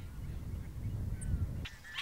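A low, uneven rumble, like wind on the microphone, with a few faint bird notes. About 1.7 s in, the rumble cuts off and clearer bird calls take over: short chirps and slurred notes.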